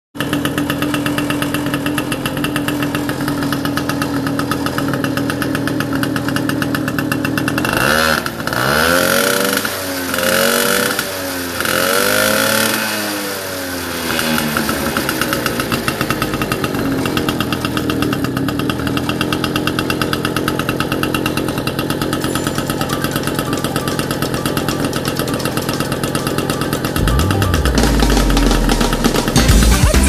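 Small moped engine running steadily on its stand, blipped three times between about eight and thirteen seconds in, its pitch rising and falling with each blip before it settles back to its steady note. A low rumble builds in near the end.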